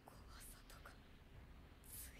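Near silence: room tone with a few faint, brief whispery hisses.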